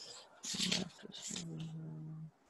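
A man's voice with no words: a few breathy, hissing sounds, then a steady hummed "mmm" held for about a second while he thinks.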